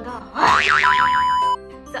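Background music with a loud sound effect whose pitch warbles rapidly up and down for about a second, starting about half a second in and cutting off abruptly.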